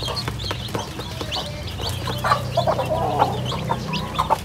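A mother hen clucking beside her newly hatched chicks, which peep with many short, high chirps, while beaks tap sharply on grain in a plastic feeder tray.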